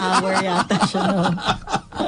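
Several people chuckling and laughing, mixed with a few words of speech, fading quieter near the end.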